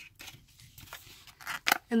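Thin clear plastic bag crinkling in the hands as a coin is taken out of it: a few short, sharp crinkles, louder near the end.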